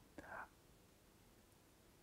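Near silence: room tone, with one short, faint breath from the speaker a fraction of a second in.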